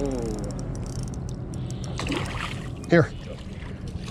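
A hooked smallmouth bass splashing at the water's surface as it is netted, with fine crackly water noise. Short vocal exclamations come at the start and about three seconds in.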